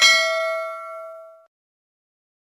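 A single bell-like ding, struck once and ringing with several clear tones that fade out over about a second and a half.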